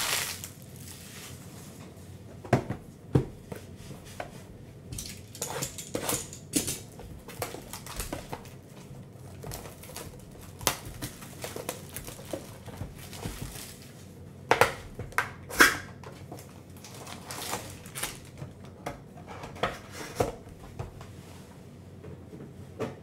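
Handling and opening a cardboard trading-card hobby box: light rustling and crinkling of wrapper and cardboard, scrapes and taps, and foil packs sliding out. Scattered short knocks, the sharpest two about fourteen and a half and fifteen and a half seconds in.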